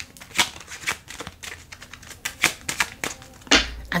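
A deck of tarot cards being shuffled in the hands: a quick, irregular run of light card snaps and flicks.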